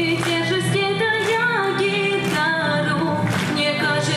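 A girl singing a pop-rock song live, accompanying herself on strummed guitar.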